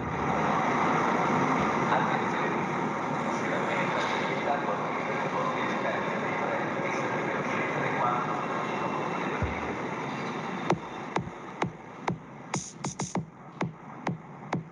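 Steady city traffic noise, then an electronic music track with sharp clicking beats comes in about eleven seconds in as the traffic noise drops back.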